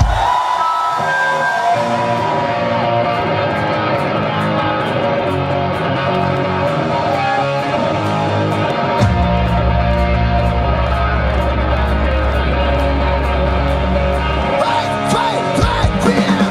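Live rock band opening a new song: electric guitar plays alone at first, then the bass and drums come in about nine seconds in. Near the end there is a short break before the full band starts again.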